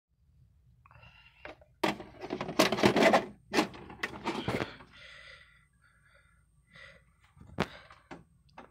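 A VHS cassette being pushed into a VCR: a quick run of clicks and plastic-and-metal clatter as the loading mechanism takes the tape in, then a single sharp click shortly before playback starts.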